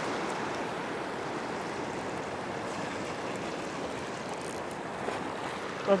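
Ocean surf washing over a rock ledge: a steady rushing of broken water. A man's voice begins right at the end.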